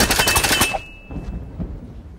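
A rapid flurry of punch impacts from a film fight scene, roughly ten sharp blows in under a second, cutting off abruptly.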